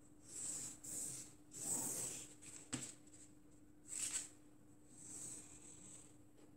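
A pen drawn along a ruler on pattern paper: several short, faint strokes, with a light tap a little under three seconds in.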